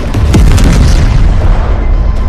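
Explosion sound effect in a battle soundtrack: a loud blast about a third of a second in, followed by a deep rumble, over orchestral score music.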